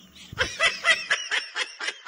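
A person laughing in quick, rhythmic snickering bursts, about five a second, starting about half a second in.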